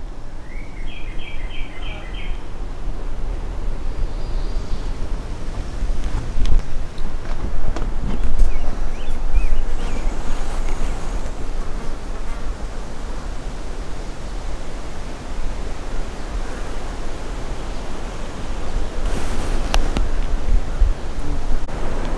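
Wind buffeting the microphone on an open overlook: a steady rushing noise with a heavy low rumble, swelling in gusts between about six and ten seconds in.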